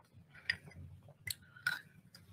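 Three short, sharp clicks and clinks from a small glass mug as it is drunk from and lowered: one about half a second in and two close together past the middle.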